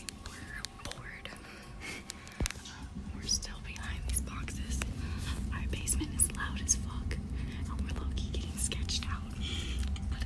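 A girl whispering close to the phone's microphone in short breathy phrases, with a low rumble underneath that grows from about three seconds in.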